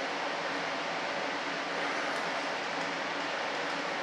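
Steady background hiss of room tone with a faint low hum, with no distinct handling sounds.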